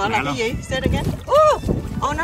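People's voices making wordless sounds, with one rising-and-falling vocal call about one and a half seconds in, over water sloshing as hands stir the sandy shallows.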